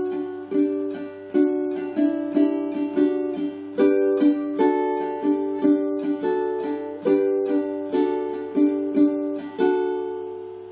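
Ukulele played solo fingerstyle: a melody of plucked single notes and small chords, about two a second, each ringing and fading, with a last note struck near the end and left to ring.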